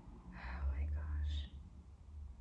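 A woman whispering briefly to herself under her breath, lasting about a second.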